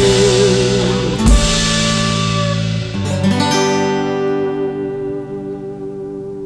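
A country band's closing chords, with guitar and bass sustaining and a sharp hit about a second in. About three seconds in a final guitar chord is struck and rings out, fading away.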